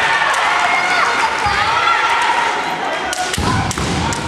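Kendo kiai: long, high-pitched, drawn-out shouts from the women fencers, overlapping, with a few thuds of stamping feet or strikes on the wooden gym floor near the end.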